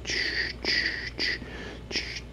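Rhythmic breathy "chh" sounds made by mouth, four short hisses about 0.6 s apart, imitating a steam engine chuffing.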